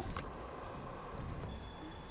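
Low, steady background noise of an indoor handball court with no clear ball strike. A faint thin high tone comes in about three-quarters of the way through.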